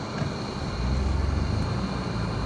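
A vehicle's engine running, a steady low rumble that grows louder about three-quarters of a second in.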